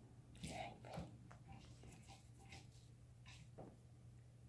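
Faint soft rustles and small clicks of a Maine Coon kitten biting and batting at a feather wand toy, loudest about half a second in, over a low steady hum.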